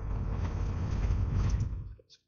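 Steady low rumbling noise with a hiss on an open microphone, with faint computer-keyboard typing under it; it cuts off suddenly at the end.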